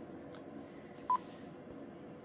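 Quansheng UV-K5 handheld radio giving a single short key beep about a second in as a menu button is pressed, over a faint hiss.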